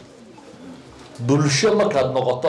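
A brief lull in a man's lecture, then about a second in he resumes speaking loudly through a headset microphone with drawn-out, pitched vowels.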